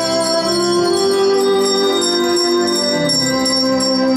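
Children's handbell choir ringing handbells, several notes sounding on together in sustained chords, the chord changing about half a second in and again near the end.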